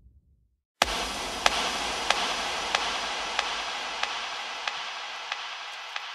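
Old-record style hiss and crackle that starts suddenly about a second in and slowly fades, with sharp clicks repeating about one and a half times a second.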